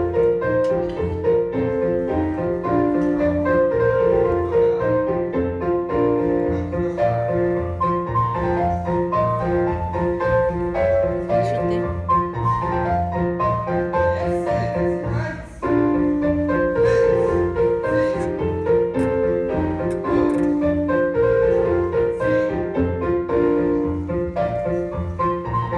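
Classical piano music of the kind played for a ballet barre exercise: a steady repeating bass under a moving melody. It breaks off briefly about two-thirds of the way through, then the phrase starts again.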